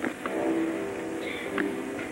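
Opera orchestra holding sustained chords in a muffled historical live recording with steady hiss and a few sharp clicks.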